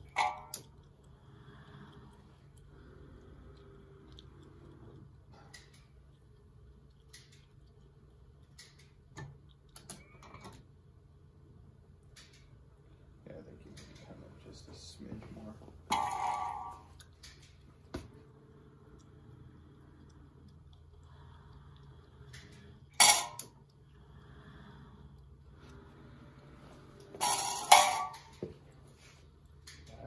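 Square steel electrical boxes clinking and clanking against each other as a robot gripper pulls them out of a cardboard box. There are a few sharp metal clinks spaced several seconds apart, the loudest near the end, over a faint steady low hum.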